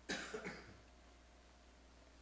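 A single short cough, about half a second long.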